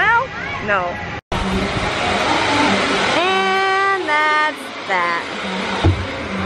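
Steady rushing noise on a moving Dumbo the Flying Elephant ride, cut by a brief silence about a second in. A voice holds one long high call about halfway through, followed by a few shorter calls.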